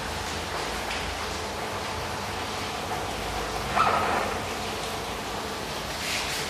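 Steady room noise with no speech, and one brief sharp sound a little before four seconds in.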